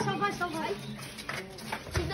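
Faint, indistinct chatter from a crowd of children's voices, quieter than the shouting around it.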